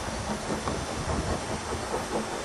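Miniature railway train running along its track: a steady, noisy rumble with irregular low knocks.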